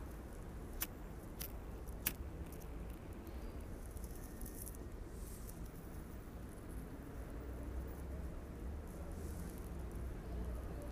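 Three sharp clicks of a pocket lighter being struck in the first two seconds to relight a tobacco pipe, over a low steady background rumble.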